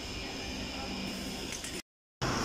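City bus standing at the stop with its doors open, running with a steady hum and a high whine. The sound cuts off abruptly near the end.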